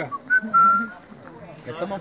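Someone whistling: two short notes, then a clear note held for about half a second that dips slightly in pitch, over faint talking.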